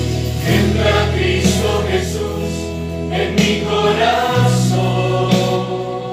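Christian worship song: voices singing over held instrumental chords, the low chord changing about four seconds in.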